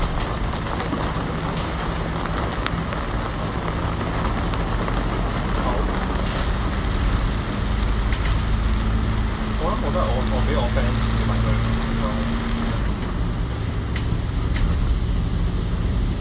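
Inside a double-decker bus: the steady drone of its Cummins L9 six-cylinder diesel with road noise as the bus draws up to a stop about ten seconds in, and a brief voice around the same time.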